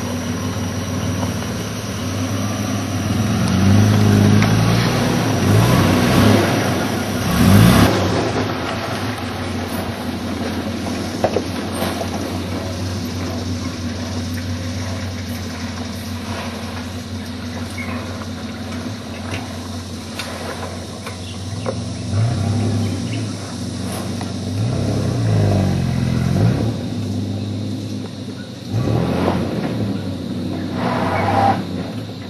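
A four-wheel-drive vehicle's engine labouring in low gear over a rutted mud track. It runs steadily and revs up and down several times, with a few short knocks from the vehicle.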